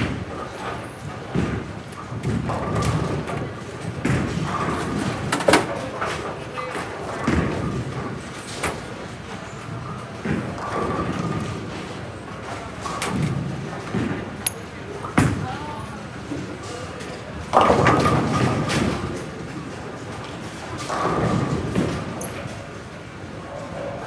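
Bowling alley: background voices, with scattered thuds and crashes of bowling balls and pins from the lanes.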